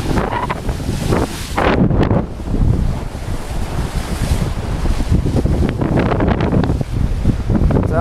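Strong wind buffeting the microphone over the rush of the sea along a sailboat's bow, making way under sail at about 7 knots through big waves. Surges of water come and go every second or two.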